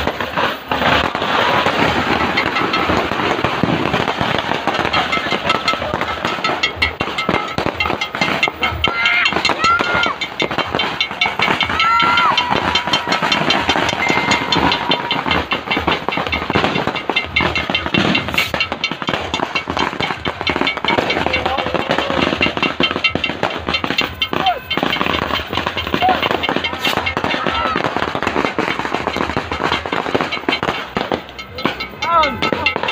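Many firecrackers and small fireworks going off together in a dense, unbroken crackle of pops, with people's voices mixed in.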